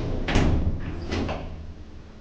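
Kone elevator's stainless-steel sliding doors finishing their close: a clunk about a third of a second in and a second clunk about a second in, after which it goes quieter.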